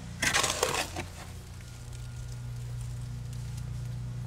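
Wet concrete shovelled into a fence post hole: a short gritty scrape and slide lasting about half a second, just after the start, over a steady low hum.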